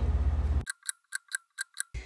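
A low steady room hum that cuts off suddenly, followed by six quick, sharp ticks over silence, about five a second, like a clock-ticking sound effect laid in at a cut between shots.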